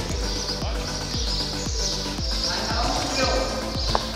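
Background music with a steady beat, about two drum strokes a second, laid over the live sound of a futsal game on a concrete court; a sharp knock near the end, fitting a ball being struck.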